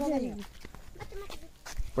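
A voice whose pitch falls away and fades in the first half-second, followed by quieter scattered sounds and a few faint clicks.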